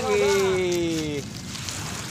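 A man's voice in a long, drawn-out call that falls slowly in pitch and breaks off a little over a second in.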